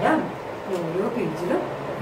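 A woman's voice speaking Malayalam in a drawn-out, sing-song way, her pitch rising and falling in repeated arcs.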